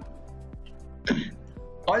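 Soft background music with steady held tones under a pause in a spoken lecture, and a single short throat-clearing sound from the man speaking about a second in.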